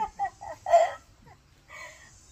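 A chicken clucking in a few short calls, the loudest just under a second in.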